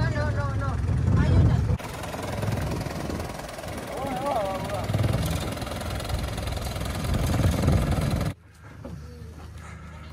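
People's voices over a steady engine rumble, with abrupt cuts about two seconds in and near the end. After the second cut only a quieter steady low hum remains.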